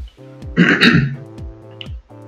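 A man clears his throat once, about half a second in, over steady background music.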